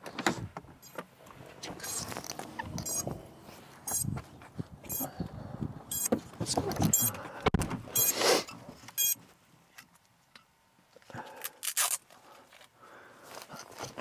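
Irregular rustling, clicking and knocking of gear being handled inside a car, with a few brief rattly clusters in the middle and a quieter stretch near the end.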